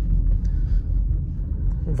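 Steady low rumble of road and engine noise inside the cabin of a Hyundai Tucson, rolling over a speed bump with no knock or clunk from the soft suspension.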